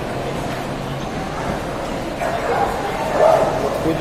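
Indistinct crowd chatter echoing in a large hall, with a dog barking and yipping over it.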